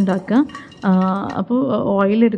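A voice talking, with a metal spoon clinking and scraping against a non-stick frying pan as a lump of paste is knocked off into the oil.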